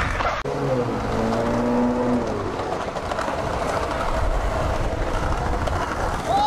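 Skateboard wheels rolling on a concrete sidewalk, a steady rumble that starts just after a sudden cut about half a second in. A low pitched hum sits under it for the first two seconds or so.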